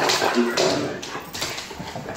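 A husky and a second dog play-fighting, with short pitched vocal sounds from the dogs about half a second in.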